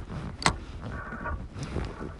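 A single sharp click about half a second in, over a low steady background rumble.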